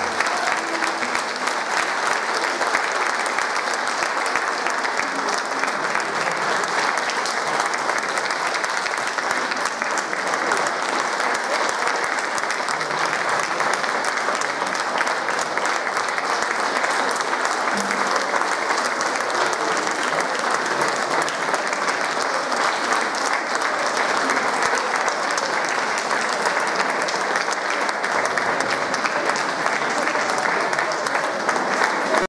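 Audience applauding, a dense, steady clapping that holds at an even level throughout, right at the end of a choir's song.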